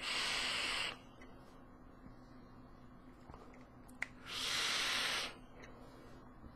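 Two short bursts of airy hiss about four seconds apart: a draw through a rebuildable dripping atomizer on a vape mod firing a 0.6-ohm coil at 60 watts, then the vapour breathed out.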